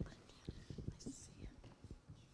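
Faint whispering with scattered soft, low thumps of bells and mallets being handled on a wooden rail; no bell is rung.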